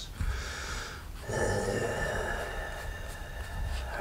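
A man's long, drawn-out "uhhh" of disappointment, held steadily for about two and a half seconds from a little over a second in, at a card pulled from a pack that is not the one he hoped for.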